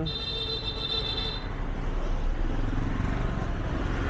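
Street traffic noise from motorbikes and scooters, a steady rumble with a thin high whine during the first second and a half.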